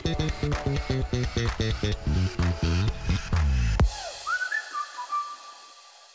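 Background music with a steady beat that stops about four seconds in, followed by a few short rising whistle-like tones that fade out.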